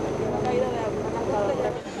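Indistinct voices over a steady drone, both cutting off abruptly near the end.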